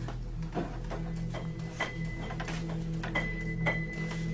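Soft, scattered clicks and taps from an upright piano as its keys are pressed and the instrument is handled, with a faint high tone near the end, over a steady low hum.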